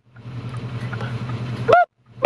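A vehicle engine idling steadily with a low, even hum. Near the end comes one short, loud honk-like call that rises and falls in pitch.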